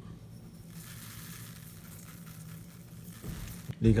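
Poppy seeds poured from a small bowl onto moist grated carrot pulp: a soft, steady hiss of tiny seeds falling, lasting a couple of seconds.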